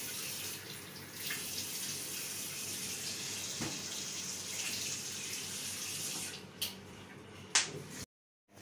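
Bathroom tap running steadily into a washbasin while a child rinses with cupped hands under the stream. The water sound gets quieter about six seconds in, and two short sharp clicks follow near the end.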